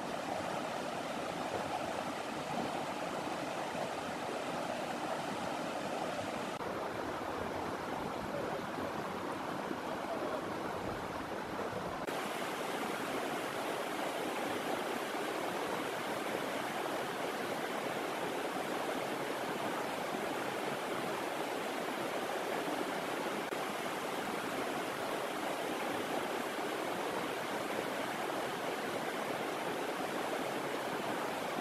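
Shallow rocky river rushing over rapids and stones: a steady rush of water, its tone shifting slightly about six and twelve seconds in.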